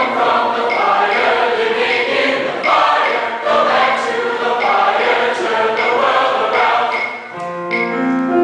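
Mixed choir of men and women singing in full harmony with piano accompaniment. Near the end the voices drop away and the piano carries on alone.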